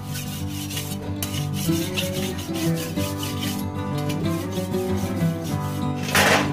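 Two kitchen knives being honed blade against blade, wet from a basin of water: a rapid run of metal-on-metal scraping strokes, with background music underneath.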